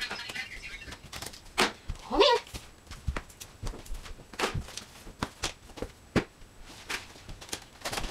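Toys being gathered off a rug and dropped into a storage bin: a string of irregular light knocks and clacks, with a brief voice sound about two seconds in.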